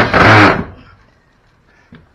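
Cordless power drill driving a screw through a metal strap into a wooden post, running loud for about a second and then stopping.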